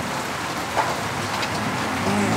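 Steady rain falling, heard as a continuous even hiss.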